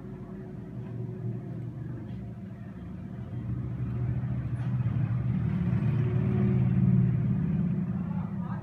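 A low engine rumble, like a motor vehicle running, growing louder over several seconds to a peak near the end and then easing off.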